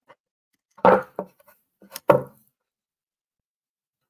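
A wooden art panel knocked and shifted on a tabletop as it is turned, giving two loud knocks about a second and two seconds in, with a lighter knock between.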